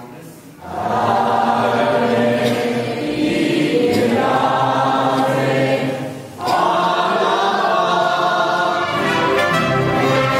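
Mariachi band playing violins and trumpets, with voices singing together. The music starts just under a second in, drops away briefly about six seconds in, then carries on.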